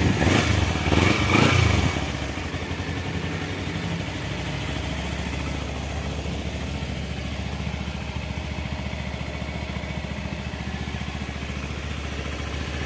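Kawasaki Ninja 250 Fi's liquid-cooled parallel-twin engine idling steadily and smoothly, louder for the first two seconds.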